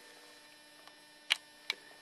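Faint steady electrical hum, with two short sharp clicks about a second and a half in, a third of a second apart.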